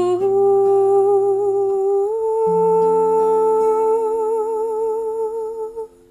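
A woman's voice holding a long wordless note with vibrato over acoustic guitar, the sung pitch stepping up about two seconds in. Voice and guitar stop together near the end.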